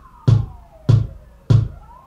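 Electronic keyboard's drum-machine beat keeping a tempo of 98 bpm: four evenly spaced kick-like thumps about 0.6 s apart, marking the quarter-note beat. A faint tone slides down and back up in pitch behind it.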